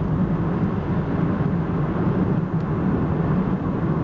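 A car travelling on a city road, heard from inside: a steady low engine drone over road noise.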